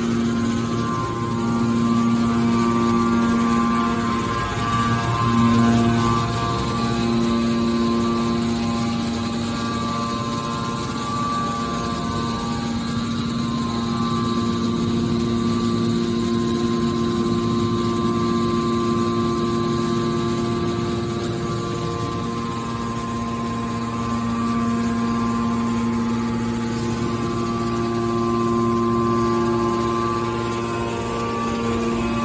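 Hydraulic power unit of a horizontal scrap-metal baler running: the electric motor and hydraulic pump give a steady hum with a pitched whine. Some of its tones fade in the middle and come back later.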